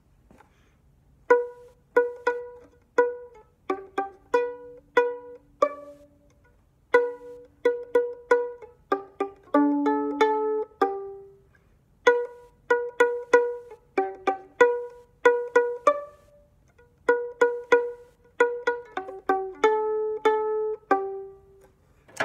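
Violin played pizzicato, single plucked notes picking out a simple tune on B, G, open A and high D. Each note starts sharply and dies away quickly, in four short phrases with brief pauses between them.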